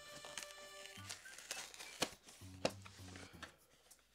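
Soft background music with steady held notes. Over it, a cardboard cereal box is worked open by hand, with a few sharp snaps of the cardboard around the middle.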